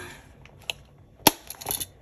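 Pink A6 six-ring binder with metal rings handled and laid on a tabletop: one sharp click a little over a second in, the loudest, then a quick run of lighter clicks and taps.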